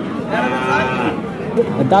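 A single moo from cattle, lasting about a second, with voices talking in the background.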